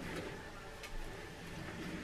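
Quiet rustling of a zip-up hoodie being handled and adjusted as it is worn, with a couple of small clicks.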